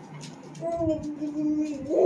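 A baby vocalizing: one long, level 'aah' held for over a second, starting about half a second in, with a louder burst of voice at the very end.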